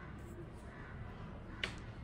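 A single sharp click a little over one and a half seconds in, over faint room noise.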